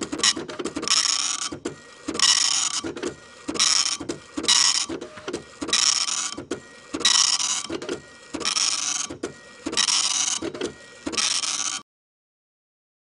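Typewriter typing sound effect: rapid clattering keystrokes in bursts of about half a second, roughly one burst a second, cutting off abruptly near the end.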